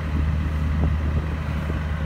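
Diesel generator running steadily under load, a continuous low drone.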